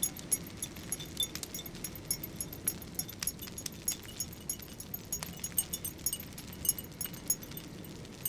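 Wood fire crackling in a tin stove: a steady, irregular run of small snaps and ticks over a low rumble of outdoor background noise.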